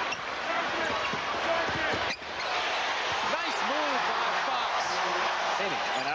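Large arena crowd noise, many voices cheering and shouting at once, with a basketball being dribbled on a hardwood court.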